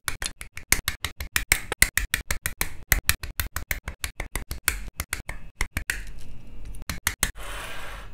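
Rapid run of sharp snips from side-cutter nippers clipping plastic model-kit parts off their runners, several clicks a second. A short scrape comes near the end.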